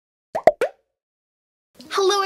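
Three short pops in quick succession about half a second in, an intro sound effect, followed by silence. A woman's voice begins just before the end.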